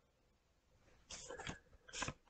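Near silence: room tone, with a few faint, brief sounds about a second in.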